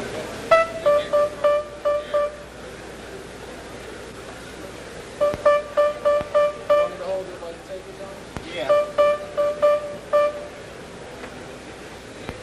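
One grand piano note sounded over and over: three runs of about six quick strikes on the same pitch, with pauses between. The note is being tested while the strings are worked on by hand inside the piano.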